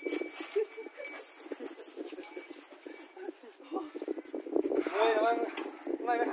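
Scuffing and rustling in dirt and dry grass and bamboo litter as a baby elephant and a person move about: a run of short scrapes and soft knocks, with a person's voice coming in about five seconds in.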